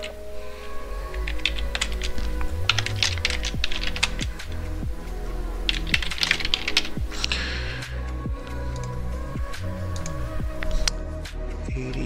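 Typing on a computer keyboard in several short bursts of key clicks, over steady background music.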